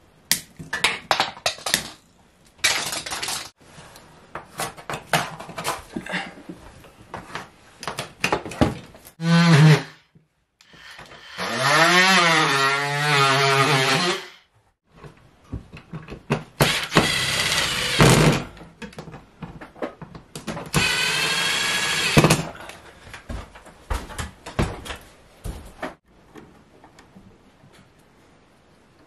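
A handheld power drill driving screws into a round electrical box on a plywood ceiling: several runs of the motor, the longest about three seconds, with the pitch rising and dipping as the screws bite. Clicks and rattles of wires and tools being handled come before the drilling starts.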